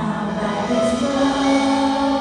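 Live rock band music with a man singing a long held note into a microphone over electric guitar.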